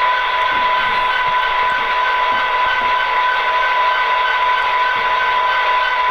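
Diesel locomotive idle sound from a SoundTraxx Tsunami 1 decoder in an HO-scale Athearn Genesis SD70, played through the model's small onboard speaker with no deep bass. It runs steadily, with a thin whine and a light pulsing about three times a second.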